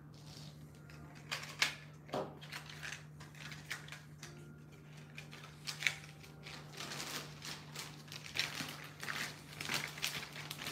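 Light clicks and taps of fountain pens being picked up and set down on a desk mat, growing more frequent in the second half, with a plastic bag rustling near the end. A steady low hum runs underneath.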